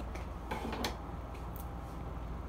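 Steel scissors clicking a few times in quick, irregular snips and handling sounds as a fringe of hair is being trimmed, with a low steady hum underneath.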